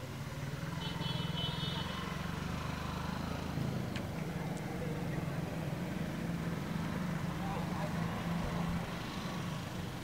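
A small engine running steadily at a low pitch, easing slightly near the end.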